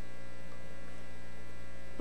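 Steady electrical mains hum in the sound system, several unchanging tones held at an even level.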